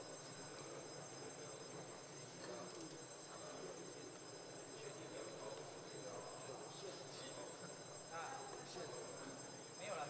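A steady, high-pitched electric bell tone of several pitches at once, held without a break: the legislature's vote-call bell summoning members to the chamber for a vote. A low murmur of voices lies under it.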